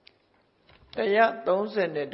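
A Buddhist monk's voice delivering a dhamma sermon in Burmese, starting again about a second in after a short pause.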